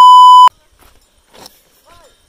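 A loud, steady electronic bleep at a single pitch of about 1 kHz, the standard censor tone, which cuts off sharply about half a second in.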